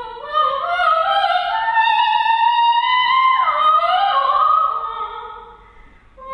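Operatic soprano singing a phrase that climbs step by step to a long high note with vibrato, then glides down; the phrase fades away near the end.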